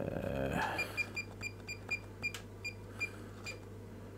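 Fluke 279 FC multimeter giving a short high key beep with each button press. It is a quick, irregular run of about fifteen beeps, four or five a second, as its menus are stepped through.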